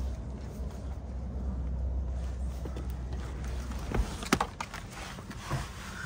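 Low rumble of wind on the microphone that stops at a thump about four seconds in, followed by a few light clicks and knocks as someone gets into a car's driver's seat.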